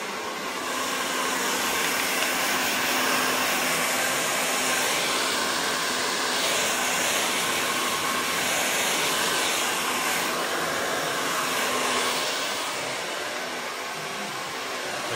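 Hand-held hair dryer running steadily on short hair as the roots are lifted for volume: a steady rush of air with a faint hum, easing off near the end.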